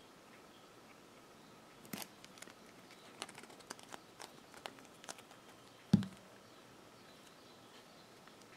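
Faint handling sounds: small clicks and rustles of hands working a plastic squeeze bottle of liquid silicone glue and a crocheted piece. About six seconds in comes one short, dull knock, the loudest sound, as the glue bottle is set down on the table.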